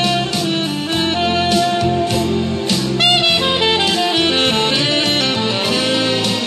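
Saxophone playing a melody live, with a bass line and accompaniment underneath.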